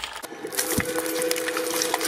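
Twin-shaft shredder running with a steady hum while its blades crack and crunch through a hard object in many sharp, irregular cracks, with one low thump just before a second in. The sound changes suddenly just after the start.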